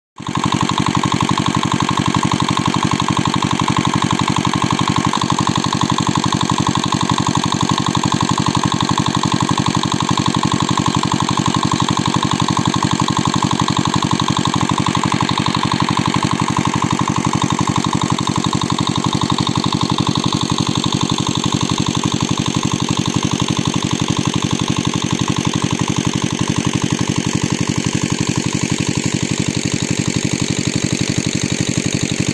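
Small engine-driven water pump running steadily with a rapid, even firing beat, pumping water out of a pond through its hoses.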